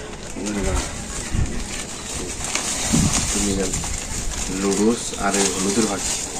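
Pigeons cooing in several short, low phrases, with the crinkle of a plastic bag being handled.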